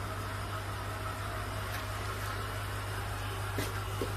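Steady low electrical hum with a light hiss, broken by two faint ticks.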